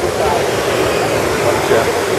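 Steady rushing of the Trevi Fountain's cascading water, with the murmur of a tourist crowd under it.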